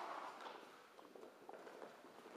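Faint, soft footsteps: a few scattered steps of a person shifting position.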